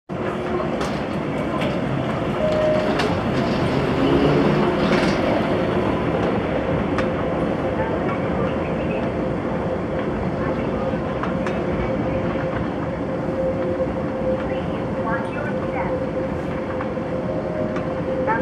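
Moving walkway running: a steady mechanical rumble with a constant hum through it and a few light clicks from the moving treadway.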